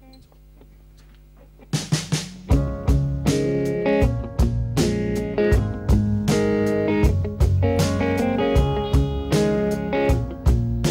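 A live pop band starts playing about two seconds in, with electric guitar and drum kit to the fore and a full low end joining a moment later. Before that there is only a faint low hum.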